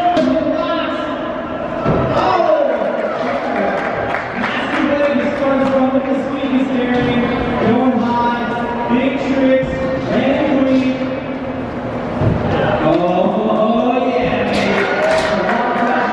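Background music with a singing voice, the vocal holding long notes.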